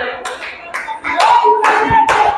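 Church congregation clapping, a few sharp claps, with a voice holding one long shouted note from about a second in.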